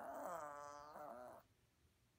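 A Maltese puppy 'talking': one drawn-out, wavering, moan-like vocal call that slowly drops in pitch and stops about a second and a half in.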